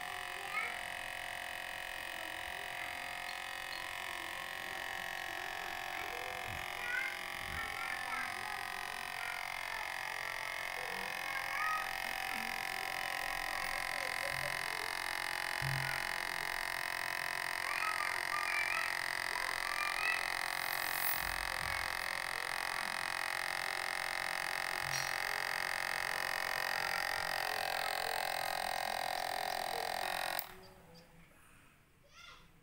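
Small electric motor spinning a fan inside a homemade plastic-bottle dryer: a steady, even whirring hum that does not change in pitch.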